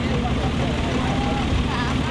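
A vehicle engine running steadily, a low rumble, with faint voices of people talking over it.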